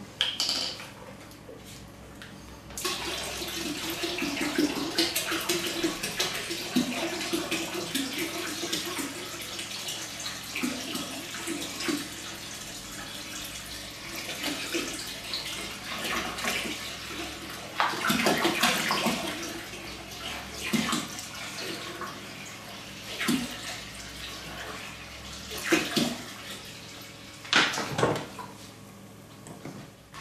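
Water poured from a large plastic bottle into a plastic fermenter bucket of wine must, a steady splashing pour with irregular gurgles as the bottle empties, starting about three seconds in. A few louder knocks break in later on.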